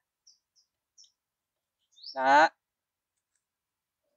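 A few faint, short plastic clicks in the first second as the quick-adjust blade guard of a Sparky angle grinder is worked into its notches, then one short spoken word about two seconds in.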